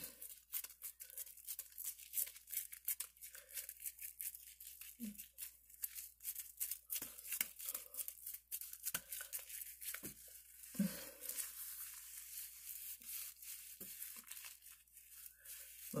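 Damp terry washcloth rubbing lightly over a face lathered with cleanser: an irregular run of soft, scratchy strokes, briefly louder about eleven seconds in.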